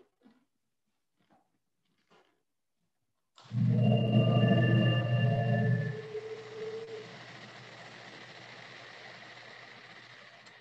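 Food processor switched on about three and a half seconds in, blending a garlic clove into hummus. It runs loud with a low hum and whining tones for a couple of seconds, then settles to a quieter, steady whir.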